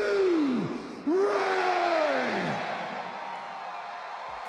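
A man's voice shouting two long, drawn-out calls with echo, each sliding down in pitch; the second starts about a second in and is the longer. After them comes a faint steady tone.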